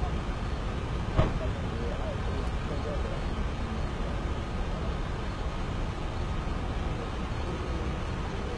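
A police SUV's door shutting once, a sharp short knock about a second in, over a steady low vehicle rumble and faint distant voices.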